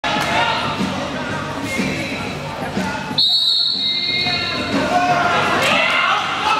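Hall noise of a roller derby bout, with chatter and skate sounds. About three seconds in, a long, steady, high whistle blast cuts in and holds for about a second and a half, typical of a referee's whistle.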